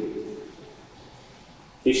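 A pause in a priest's amplified sermon. His last word dies away in the church's echo, the hall stays quiet, and he starts speaking again just before the end.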